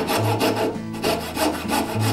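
Coping saw cutting through solid oak in quick, even back-and-forth strokes, the blade rasping in the wood.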